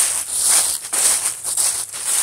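Footsteps crunching through dry fallen leaves on a woodland trail, about two steps a second.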